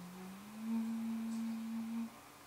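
A single sustained low, nearly pure tone at the close of the song. It slides up a little in pitch and gets louder about half a second in, holds steady, and stops abruptly at the end.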